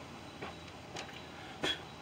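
Faint steady hiss of a pressure arc lantern burning low, its fuel valve just cracked open after the generator was preheated, with a few faint clicks and one short sharp sound near the end.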